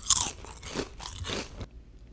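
Someone biting into crunchy food and chewing it. The first bite is the loudest crunch, followed by a few more crunching chews that stop shortly before the end.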